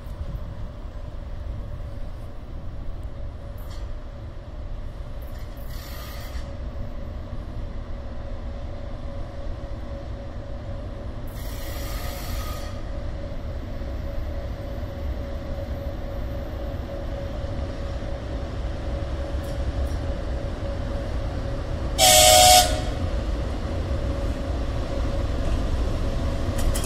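VL82M dual-system electric locomotive hauling a freight train toward the station, its rumble and steady hum growing louder as it nears. About 22 s in it gives one short, loud horn blast.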